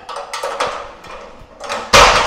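Aluminium folding loft ladder clattering and knocking as its sections are folded up into the ceiling hatch, with the loudest knock near the end.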